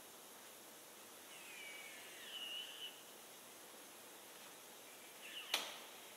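Metal parts of a car-body assembly jig being handled: a faint squeak that slides down in pitch and then holds for about a second and a half, then a short squeak and a single sharp click near the end, over a steady low hiss.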